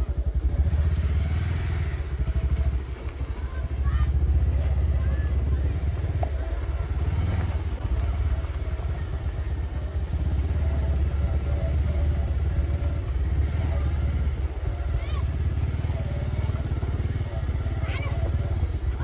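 A steady low rumble that starts suddenly at the cut and runs on without a break, with faint voices over it.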